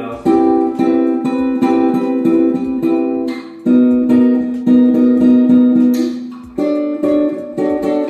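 Water-damaged nylon-string classical guitar played fingerstyle, repeated picked chords with the harmony changing twice; the player calls it barely playable.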